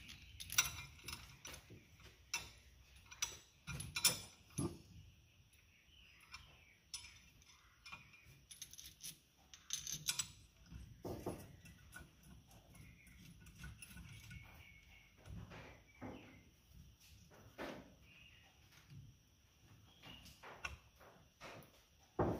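Light, scattered metallic clicks and taps of a bolt and hand wrench as the proportioning valve bracket is fastened below the brake master cylinder. The clicks come irregularly, a few a second at times, with quiet gaps between.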